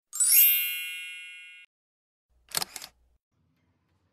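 Title-card chime sound effect: a quick rising sparkle of bell-like tones that rings on, fading, and cuts off after about a second and a half. About a second later comes a short cluster of sharp clicks.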